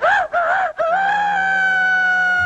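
A cartoon boy's voice crowing like a rooster: a short wavering phrase, then one long held high note.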